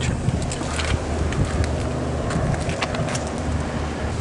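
Steady low mechanical hum with wind noise on the microphone and a few light scattered clicks.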